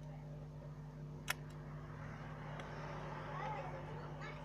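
A single sharp click about a second in as a metal pry tool works at the opened smartphone's frame, over a steady electrical hum.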